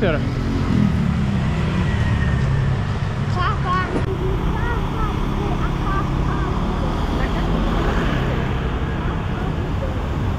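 Street traffic noise: a steady low engine rumble, with a motor scooter crossing near the middle and faint voices in the background.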